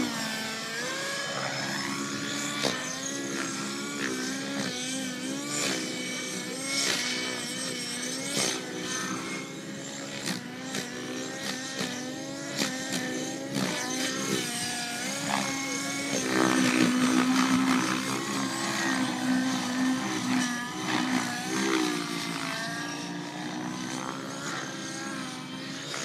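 Radio-controlled aerobatic model airplane's gas engine in flight, its pitch rising and falling over and over as the throttle is worked through manoeuvres, loudest for a couple of seconds past the middle.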